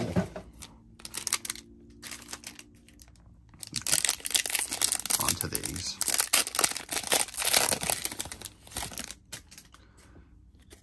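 A foil trading-card pack wrapper crinkling and tearing as it is pulled open by hand: a few short rustles at first, then a dense run of crackling from about four seconds in until near the end.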